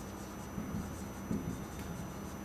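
Marker pen writing on a whiteboard: faint, irregular strokes of the tip across the board.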